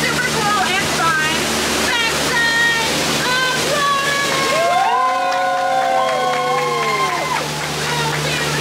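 A waterfall pouring down right beside the boat, a steady rush of falling water, with voices over it and a long drawn-out cry from several voices about five seconds in. A steady low hum runs underneath.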